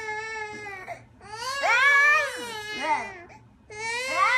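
Infant crying in long wails, two drawn-out cries with a short break between them about a second in, then a brief pause near the end.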